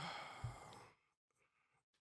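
A man's short breathy sigh while pondering a hard choice, with a small knock in the middle, then near silence.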